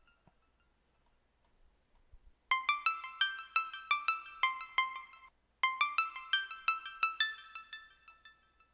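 Synth pluck melody playing back from a DAW loop while a moved note is checked by ear. It is a quick run of short, bright plucked notes that starts about two and a half seconds in, breaks off briefly in the middle, and fades near the end.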